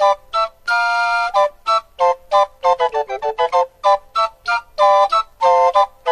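Instrumental music: an organ-like keyboard plays a quick, uneven run of short, detached notes, mostly on one pitch, with one longer held note about a second in and a dip to lower notes about halfway.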